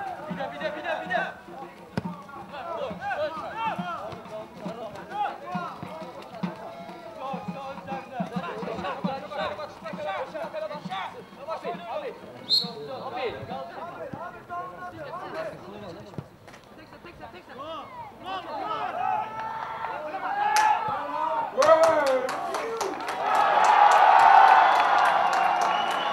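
Voices of spectators and players calling out around a football pitch. Near the end, a louder burst of cheering and clapping from the small crowd as a goal is celebrated.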